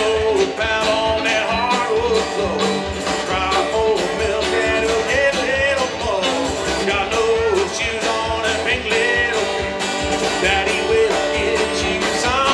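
Live band playing with a steady beat: acoustic guitar, electric guitar, upright bass and drums.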